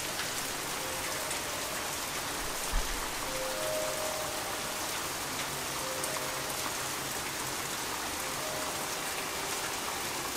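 Heavy rain falling steadily on flooded ground and a wooden deck, with one brief low thump about three seconds in.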